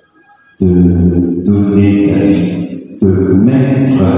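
A man singing in long held notes into a microphone, after a short pause at the start.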